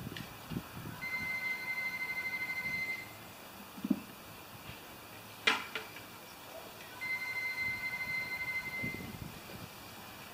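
Telephone ringing: two warbling electronic rings, each about two seconds long, four seconds apart. A sharp click falls between them.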